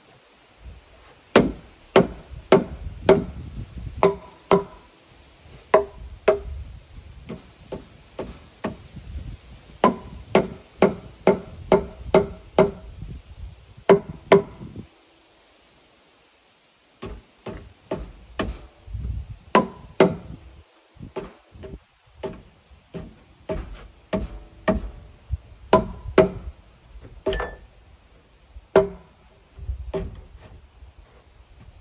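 Repeated hammer blows on a wooden log post, about two a second, each with a short pitched ring. The blows stop for about two seconds in the middle and then continue.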